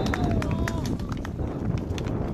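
Distant shouting across an outdoor football pitch: one long, drawn-out call in the first second, then fainter voices, over wind rumble on the microphone and scattered faint taps.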